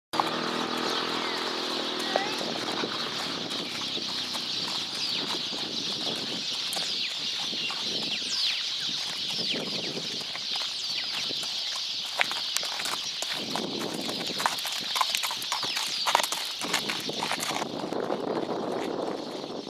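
Many birds chirping over a steady high chorus, with the irregular crunching steps of a horse's hooves on a gravel drive, most frequent in the second half. A low drawn-out call sounds once near the start.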